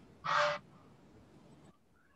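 A single short, harsh animal call about half a second in.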